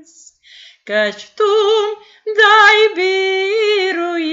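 A woman singing a Romanian hymn solo and unaccompanied, with a strong vibrato on held notes, heard over a video call. A held note ends at the start, followed by a brief breathing pause before the next phrase begins about a second in.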